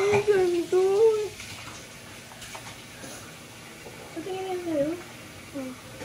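A high voice for about the first second and again briefly a little past four seconds in, with a quieter stretch of noise between.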